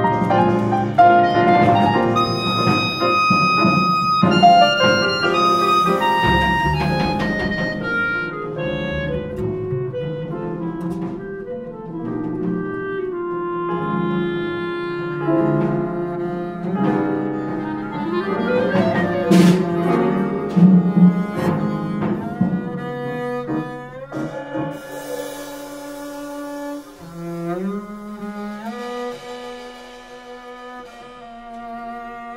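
Live acoustic quartet playing: clarinet over piano, double bass and drums. From about 24 seconds in, a bowed double bass takes over with slow sliding low notes.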